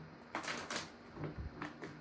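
Tarot deck being shuffled by hand: a string of short, irregular card flicks and taps.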